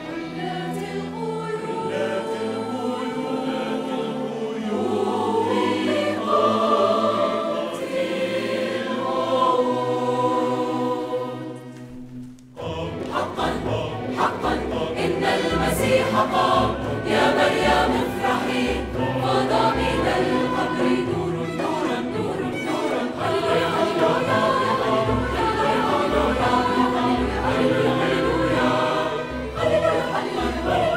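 Mixed choir singing with an orchestra of bowed strings. The music breaks off briefly about twelve seconds in, then comes back fuller.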